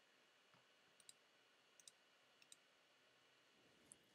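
Near silence, with four faint, short computer mouse clicks spread over the last three seconds.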